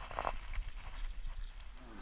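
Low wind rumble and handling noise on the microphone of a camera carried up a rock face by a climber, with a brief voice-like sound about a quarter of a second in.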